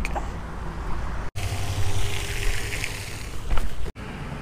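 Wind rumbling on the camera microphone over steady outdoor background noise, cut off twice by brief drops to silence, about a third of the way in and near the end.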